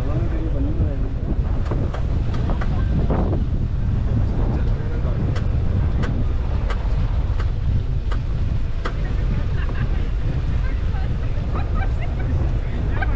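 A car with snow chains fitted driving slowly on a packed-snow road: a steady low rumble of tyres and engine with wind buffeting the microphone. Sharp clicks come every half second or so from about two seconds in until about nine seconds in.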